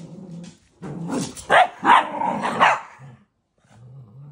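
Cavalier King Charles spaniels barking and growling in play: a low growl at first, then about four loud barks in quick succession starting about a second in, and another low growl near the end.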